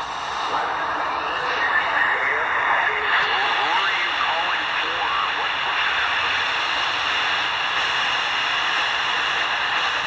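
Tecsun R9012 portable receiver's speaker playing an 80-metre amateur AM transmission: steady shortwave hiss and static with a faint, weak voice in it, mostly in the first half.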